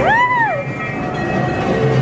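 Dark-ride train effect: one short train whistle blast that rises and falls in pitch, over a steady low rumble of train noise.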